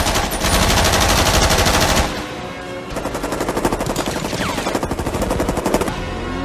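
Bursts of rapid automatic gunfire, loudest and densest in the first two seconds, then another long stretch of rapid fire from about three seconds in, over a film score.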